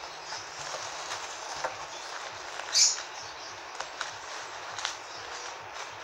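Light handling noises from an artificial flower arrangement: a few faint clicks and one short rustle about three seconds in, over a steady background hiss.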